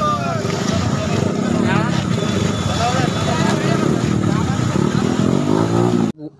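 Motorcycle engines running in a crowd on the move, with men's voices shouting over them.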